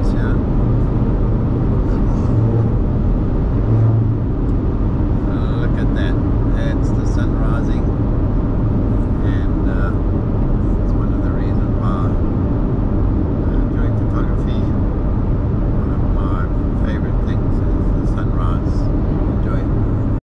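Steady road and engine noise heard from inside a car travelling at highway speed, a little louder in the first few seconds while it overtakes a truck.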